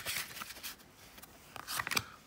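Tarot cards being fanned and slid apart by hand, giving short papery flicks and clicks, with a quieter stretch in the middle; near the end a card is drawn and laid down on a wooden table.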